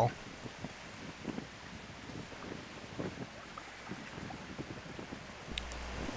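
Faint outdoor ambience of wind on the microphone and choppy water washing against a rock wall, with a brief low rumble near the end.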